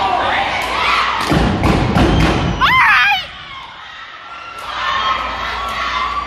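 A dance team's feet stomping hard in unison on a concrete floor for about two seconds, ending on a short high shout, over crowd cheering and chatter.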